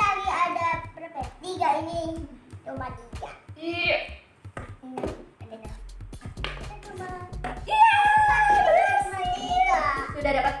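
Plastic hula hoop segments clicking and knocking as they are pushed together by hand, under background music and a child's voice. A long held vocal or musical note runs near the end.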